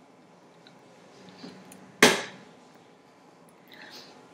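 Mostly quiet kitchen room sound, broken about two seconds in by a single sharp, loud thump that dies away within half a second.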